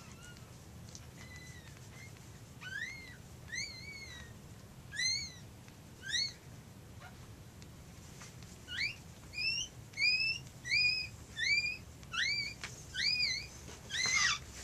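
Newborn cockapoo puppy crying in short, high squeaks that each rise and then fall in pitch: a few scattered ones at first, then a steady run of about one or two a second that grows louder in the second half.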